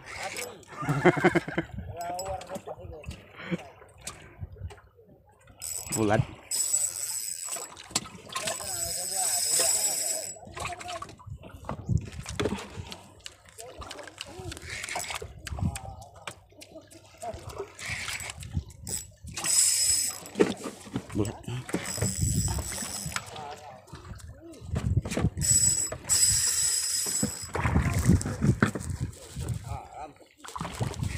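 Spinning fishing reel's mechanism sounding in several high-pitched bursts of one to four seconds, with quieter stretches between.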